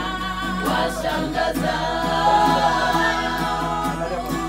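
A small group of women singing together in harmony, unaccompanied, with a few hand claps.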